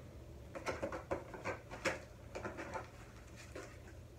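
Irregular rustling and light clicks and knocks of items being rummaged out of the bottom of a book subscription box.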